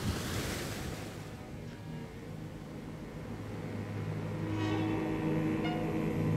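Sea surf washing on a stony shore, then a low, held chord of film-score music that swells in from about four seconds in.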